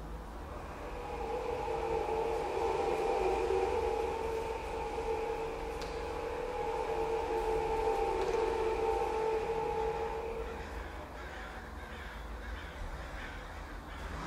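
Atmospheric intro of a dark psytrance track: sustained droning tones over a steady low rumble, with no beat. The tones fade out about ten seconds in.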